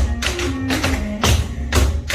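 Tap shoes striking a hard floor in a practised routine, sharp metal-tap strokes over recorded music.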